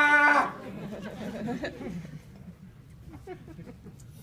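A person imitating a dog with one long held whine that breaks off about half a second in, followed by quiet chuckling.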